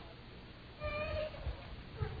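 A faint, brief, high-pitched voice-like call lasting under half a second, about a second in, over quiet room tone.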